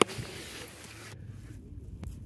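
Handling noise from a handheld camera being swung: a sharp knock, then a rustling hiss that cuts off abruptly just over a second in, leaving a quiet outdoor background.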